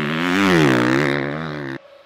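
Motocross bike engine revving: the pitch rises and falls back as the throttle is worked, then the sound cuts off abruptly near the end.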